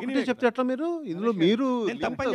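A man speaking into a microphone, his voice heard through the hall's sound system.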